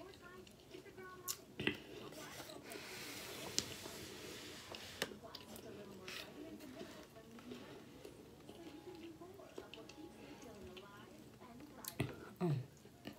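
Close-up chewing and mouth sounds of someone eating, with a few sharp clicks and a short hiss about three seconds in, over faint television voices in the background.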